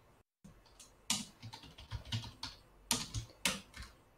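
Typing on a computer keyboard: an irregular run of separate keystrokes, a few of them struck harder than the rest.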